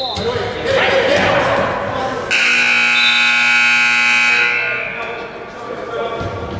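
Gym scoreboard buzzer giving one long, steady blast of about two seconds, starting a couple of seconds in and fading with the hall's echo; it signals a stop in the wrestling bout, typically the end of a period. Crowd voices come before it.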